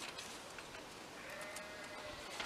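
A single faint sheep bleat, one pitched call of under a second in the second half, over quiet outdoor background.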